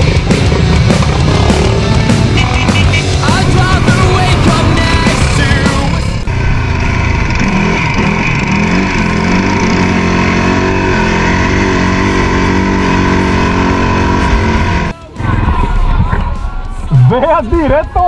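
Quad bike (ATV) engines running on a dirt trail under loud background rock music. About six seconds in the sound changes to a steady engine drone, which drops out briefly near the end before voices come in.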